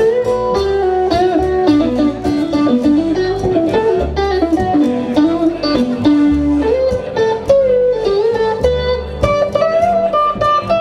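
Live country band's instrumental break: an electric guitar picks a stepping melody over a strummed acoustic guitar and plucked upright bass notes.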